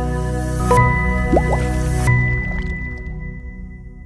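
Short electronic logo jingle: a few struck notes ringing over a low drone, with two quick rising glides about a second and a half in, then dying away toward the end.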